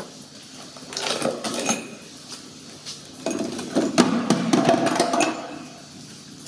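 Broken glass shards clinking and rattling as they are tipped from a dustpan into a plastic bucket, in a short burst about a second in and a longer one of about two seconds from three seconds in.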